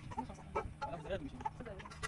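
Chickens clucking in several short calls, with voices mixed in.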